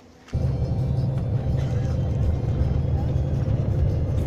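Steady low rumble of a moving bus's engine and road noise heard from inside the cabin, starting abruptly just after the start.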